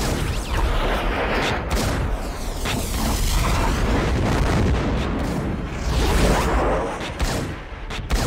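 Action-film gunfight sound effects: gunshots and booms with whooshing sweeps over a deep, continuous rumble, with several sharp hits scattered through.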